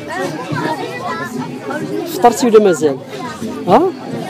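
Overlapping chatter of children's voices.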